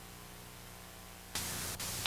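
Hiss and low mains hum from an old VHS tape's audio track with no narration, stepping up louder about two-thirds of the way in, with a faint click shortly after.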